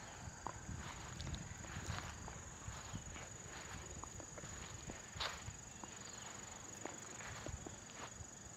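Faint footsteps on grass with scattered soft clicks and knocks, over a steady high-pitched tone.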